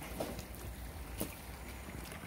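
Faint outdoor background: a steady low rumble of wind on the microphone, with a soft tap about a second in.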